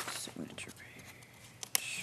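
Paper rustling as the pages of a thick bound document are turned and loose sheets are handled on a table, with a few short sharp clicks, the loudest a little before the end.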